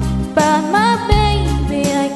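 A woman singing with vibrato over an instrumental backing track with a bass line and drums.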